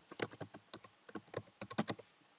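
Computer keyboard typing: a quick, uneven run of about a dozen keystrokes.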